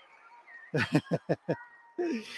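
A man laughing: a short run of five quick laughs, each falling in pitch, about a second in.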